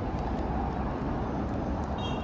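City street traffic: cars driving past, a steady low rumble of road noise with no distinct events.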